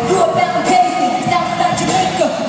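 Loud live pop/hip-hop concert music with singing, recorded from the audience in a large hall.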